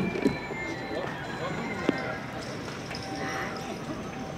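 Indistinct chatter of a street crowd, with two sharp clacks, one just after the start and one about two seconds in, and faint music behind.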